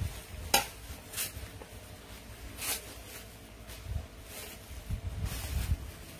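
Clothes hangers clicking against a metal clothes rail, a few sharp clicks with low handling thumps and fabric rustle as a dress is hung or taken down.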